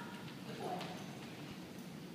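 A dog's claws clicking on a hard floor as it walks across the room: a run of light ticks.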